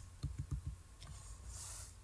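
A quick run of about five light computer-input clicks in the first second, from a mouse and keyboard being worked at a desk, followed by a short soft hiss near the end.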